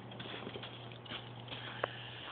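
Dog pawing and burrowing in deep snow: a run of soft, irregular scuffs and crunches, with one short sharp click near the end.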